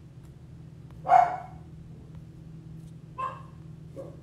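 A small dog barking twice: a short bark about a second in and a fainter one just after three seconds.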